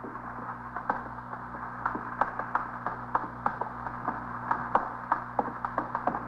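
Footsteps of several people walking slowly: irregular soft taps, two or three a second, over the steady low hum of an old recording.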